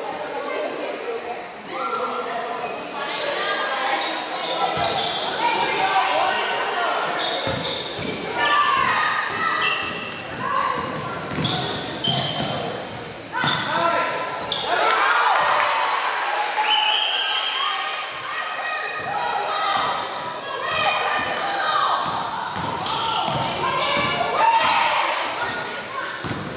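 A basketball being dribbled and bouncing on a hardwood gym floor, with players' and spectators' voices calling out and echoing around the gym.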